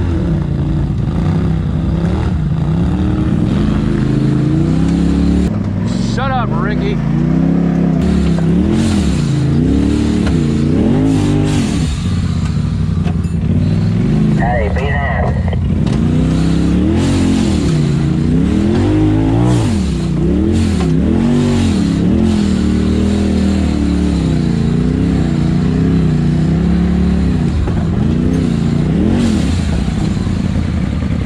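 Polaris RZR side-by-side's engine heard from inside the cab, revving up and falling back over and over as it crawls a rocky ledge trail. Two brief higher wavering whistles come about six and fifteen seconds in.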